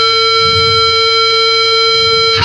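Distorted electric guitar holding a single steady feedback tone, bright and sustained, over a faint low rumble of bass.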